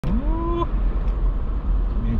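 Low, steady rumble of a car driving, heard from inside the cabin, with a short tone in the first half-second that rises in pitch and then holds.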